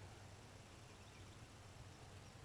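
Near silence: only a faint, steady low background hum.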